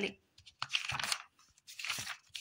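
Paper rustling as textbook pages are turned: a rustle about half a second in and a shorter one near the end.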